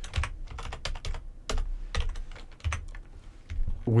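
Computer keyboard typing: a run of irregular key clicks as a short word is typed.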